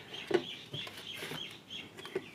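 Faint bird calls: a quick, even series of short high chirps. There is a light knock about a third of a second in.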